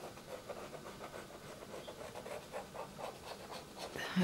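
Fine-tip pen scratching and tapping on brown paper in quick short strokes, several a second, while inking detail into a drawing.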